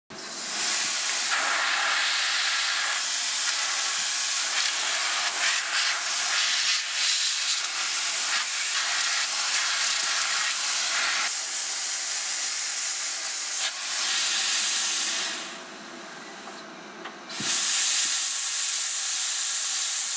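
Compressed air hissing steadily from an air-blast nozzle aimed at the bit of a MillRight CNC router. It is strong, "pretty darn powerful", and is fed from an air compressor through a needle valve. The hiss drops away for about two seconds near the end, then comes back at full strength.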